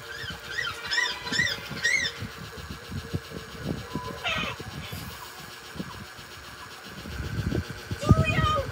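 A cartoon bird calling from a TV speaker: a quick series of rise-and-fall chirps, about two a second, over the first two seconds, then a short squawk about four and a half seconds in. Low, uneven knocks and rumble run underneath.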